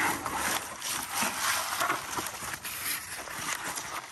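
Stiff cardboard sheet being slid around a sapling's stem and pressed down over dry leaves and grass: uneven scraping and rustling with a few crisp crackles.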